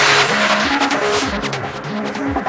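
Psytrance track in a breakdown, with the kick and bass dropped out: held synth notes over repeated falling low synth sweeps.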